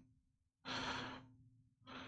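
A person's breath close to the microphone: one short sigh lasting about half a second, with another breath starting near the end.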